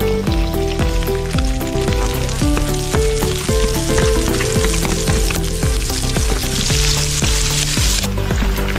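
Chopped garlic frying in a wide wok, sizzling steadily as diced onion, sliced chillies and then diced carrots are tipped in. Background music with a melody and bass line plays throughout.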